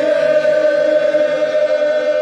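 A group of voices singing together in unison, holding one long, steady note.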